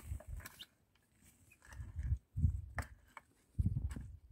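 Hoe blade chopping into loose red soil and dragging it down into a drainage trench: a few dull thuds and scrapes of falling earth, with a quiet pause about a second in and the last stroke near the end.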